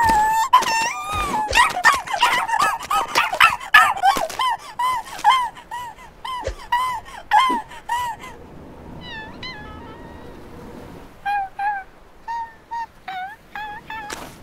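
Cartoon seal character's voice: a quick run of short, squeaky yelps that rise and fall in pitch. They fade to a few faint ones after about eight seconds, then a short series of louder yelps comes near the end.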